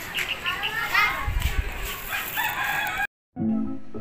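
Outdoor bird calls, curving and pitched, for about three seconds. Then an abrupt cut to a moment of silence, and background music with plucked notes begins near the end.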